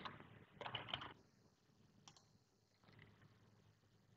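Computer keyboard typing: a quick run of keystrokes about half a second in, then a few faint single clicks.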